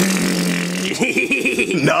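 A zerbert: a raspberry blown against a belly, a steady buzz lasting about a second, followed by voices.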